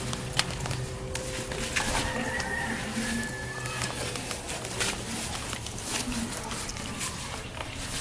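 Scattered clicks and rustling from a backpack being handled and pulled on over the shoulders, over a low steady hum.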